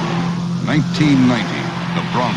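Film trailer soundtrack: a steady low hum under a rush of noise in the first half, then a short burst of a voice about a second in.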